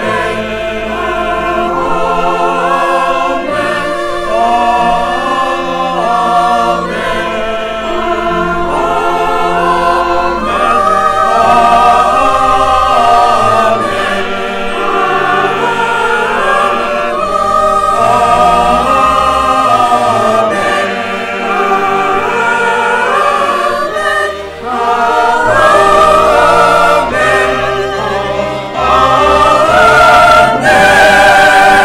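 Mixed choir of women's and men's voices singing in harmony, growing louder over the last few seconds.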